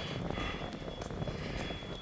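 Steady wind rumbling on the microphone at the seashore, with a faint thin high tone running under it.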